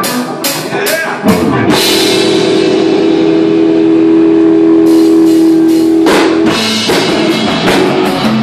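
Live rock band on electric guitars through Marshall amps, with a drum kit, starting a song: a few sharp drum hits, then a loud chord held ringing for about four seconds, before the band breaks into a driving beat near the end.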